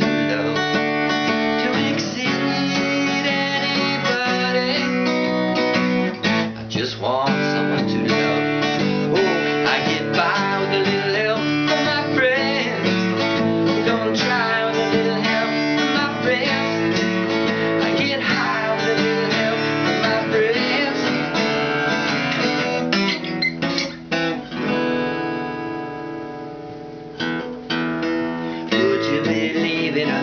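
Epiphone acoustic guitar being strummed and picked, playing a song's chords steadily. About twenty-five seconds in, a chord is left ringing and fades, then the strumming picks up again near the end.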